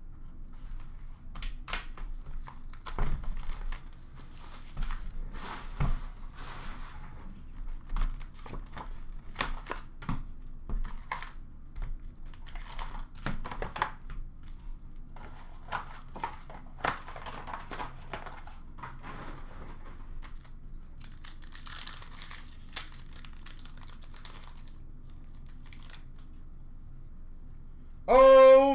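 Upper Deck hockey card box being opened and foil card packs torn open, the wrappers crinkling and tearing in short bursts, with light clicks and knocks as cards and packs are handled.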